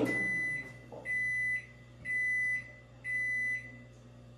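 Microwave oven beeping four times at the end of its timed heating cycle, signalling that it has finished: four long, evenly spaced, high-pitched beeps about a second apart.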